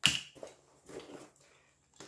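A hand rummaging through a fabric shoulder bag of small loose finds. A sudden rustle as the hand goes in is followed by softer handling noises.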